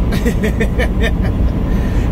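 Peterbilt 389 semi truck at highway speed heard inside the cab: a steady low engine and road rumble. A few short breathy bursts come in about the first second.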